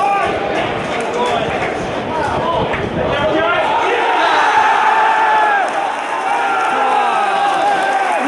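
Football stadium crowd: shouting and chatter during an attack, swelling about four seconds in into a sustained cheer from many voices as a goal is scored from a header.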